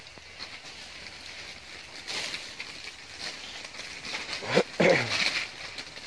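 Loose potting soil rustling and scraping as it is scooped by hand into a plastic nursery bag. About four and a half seconds in comes a short, loud voice-like call that falls in pitch.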